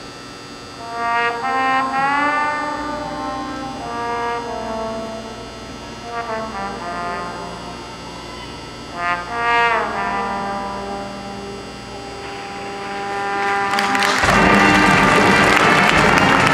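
Marching band brass playing a quiet, sparse passage of held notes with sliding pitch bends, swelling gradually; about fourteen seconds in the sound jumps suddenly to a loud, full, noisy burst.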